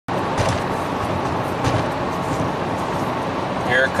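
Steady road and engine noise inside the cabin of a 1996 Mercury Mystique cruising at about 68 mph. A man's voice comes in just before the end.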